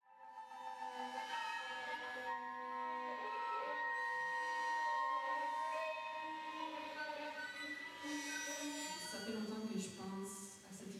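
Contemporary chamber ensemble of flute and bowed strings playing long held notes that overlap and shift slowly, fading in from silence. Lower notes come in near the end.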